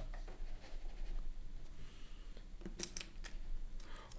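Faint handling noise of small plastic action-figure belts: scattered light clicks and rustles, with a quick cluster of sharp clicks nearly three seconds in.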